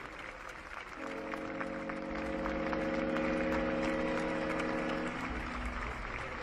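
Horns of Paraguayan Navy ships sounding together as one steady chord of several tones, starting about a second in and stopping about four seconds later.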